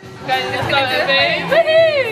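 Women's voices in high, sing-song calls, the pitch wavering and sliding, ending in a long call that rises then falls.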